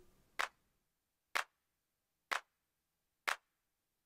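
A sampled electronic hand clap from an AI drum generator, played alone by a sequencer. It sounds four short, dry, snappy hits, about one a second.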